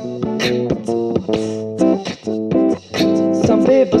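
Instrumental passage of a pop song: acoustic guitar strumming and changing chords, with sharp beatboxed percussion hits between the strums.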